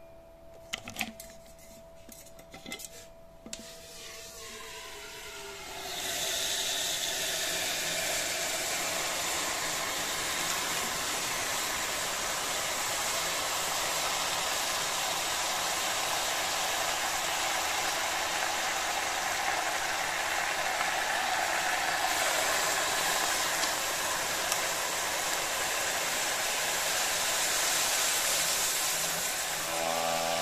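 Liquid nitrogen boiling off around a stepper motor in a glass bowl: a steady, even hiss that starts suddenly about six seconds in. Before it there are a few quieter seconds with faint clicks and a thin steady tone.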